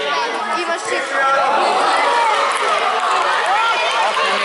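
Many children's voices shouting and calling out at once during play in a youth football match, growing louder and busier about a second in.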